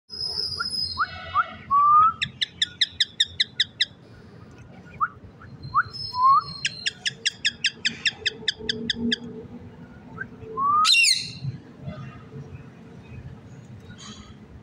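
Indian ringneck parakeets calling: two runs of rapid repeated calls, about seven a second, with short rising whistles between them, then one loud harsh screech about eleven seconds in.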